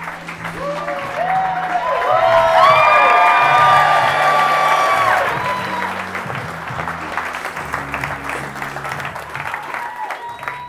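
Comedy club audience applauding and whooping over walk-on music with a repeating bass line. The applause swells to its loudest a few seconds in, then eases off.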